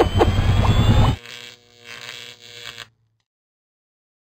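Electronic whoosh sound effect with a rising whistle, loud for about a second, then a fainter steady hum that cuts off about three seconds in.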